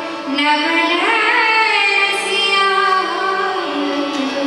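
A female Hindustani classical vocalist holds a long, ornamented note that glides upward about a second in and then eases back down.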